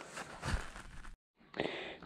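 Faint background noise with a soft low bump about half a second in. A little past one second the sound drops out to dead silence for about a third of a second at an edit cut, then faint noise resumes.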